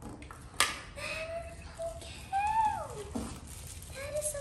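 A small bamboo steamer box and plastic wrap being handled, with a sharp click about half a second in. This is followed by a high, wordless voice that slides up and then down in pitch.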